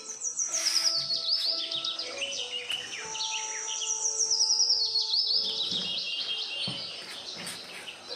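A songbird singing long, rapid trills of high chirps, many quick downward-sweeping notes in a row, with steady lower tones running beneath.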